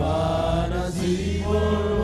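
Worship music: voices singing long held notes in a slow chant-like phrase over a steady bass.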